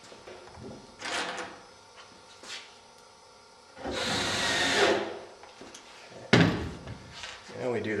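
A screw being power-driven through the 3 mm plywood wing skin into the batten strip: a steady burst of about a second about halfway in, with a few small knocks of handling around it and one sharp knock, the loudest sound, a little later.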